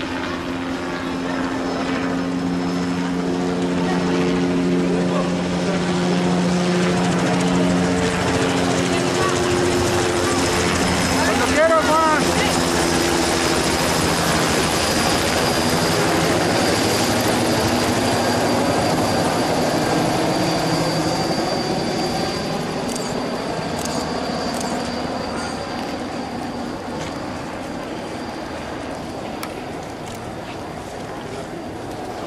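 A large marching crowd on a street, many voices at once, over a steady low engine-like drone that fades after the first half.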